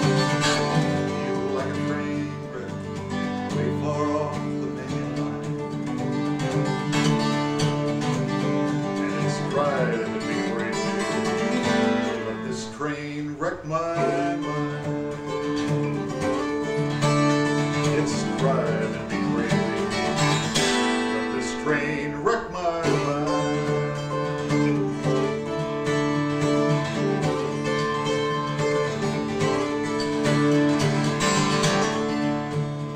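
Twelve-string acoustic guitar played with a flatpick: strummed chords under picked melody lines, in a bluegrass/country style. A few notes slide in pitch around the middle.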